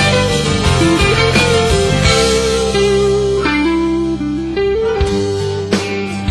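Southern rock band in an instrumental break: a lead guitar plays a melody that steps and slides in pitch over steady bass and drums.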